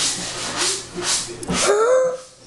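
A person gasping in harsh, hissing breaths, about two a second, with a short voiced sound near the end.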